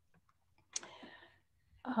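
A single sharp click about three-quarters of a second in, followed by a short breathy hiss that fades within half a second, in an otherwise near-quiet pause.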